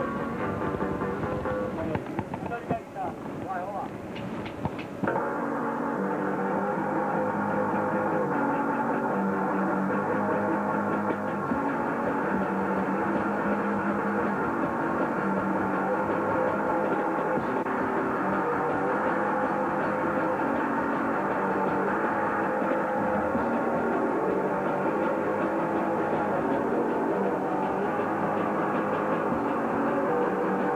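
Noisecore band playing live with distorted electric guitars and drums. The first few seconds are uneven, with scattered hits and noise. About five seconds in, the full band comes in suddenly and loud, and keeps up a dense, unbroken wall of distorted sound with slowly shifting held notes.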